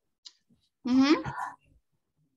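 A short spoken utterance, under a second long, that rises in pitch at its end, with a faint click just before it.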